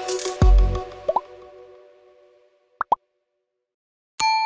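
End-screen music closing on a deep bass hit and fading away, with short rising pop sound effects: one about a second in and a quick pair near the end of the third second, then silence.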